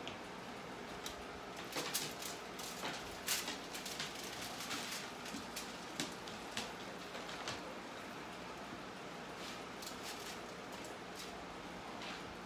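Metal kitchen tongs clicking and scraping on a foil-lined baking sheet, with foil crinkling, as bacon-wrapped jalapeños stuck to the foil are pried up and set down. Short clicks and rustles come in a busy run through the first half and a smaller bunch near the end.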